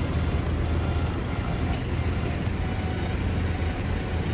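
Steady low rumble of a vehicle's engine and running noise, heard from the moving vehicle.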